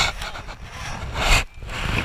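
Strong wind buffeting the microphone on an open boat at sea: a rough rushing noise that surges in gusts, dropping away briefly about one and a half seconds in before rising again.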